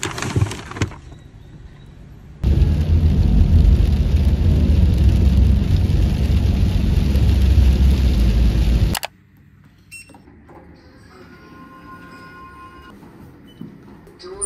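Heavy rain drumming on a car's roof and windscreen while driving, heard from inside the cabin: a loud, steady roar that begins a couple of seconds in and cuts off suddenly after about six seconds. A brief rustle of paper grocery bags comes at the start.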